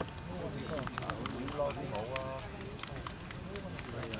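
Indistinct background voices talking, with a few light clicks and taps scattered through it.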